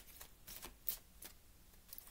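A deck of tarot cards being shuffled by hand, the cards slipping from one hand into the other in a string of irregular soft flicks, the sharpest about a second in.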